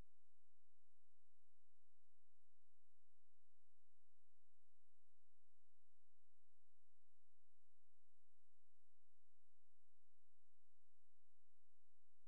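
Quiet background: a faint, steady electronic tone of several held pitches over a low hiss, with no other sound.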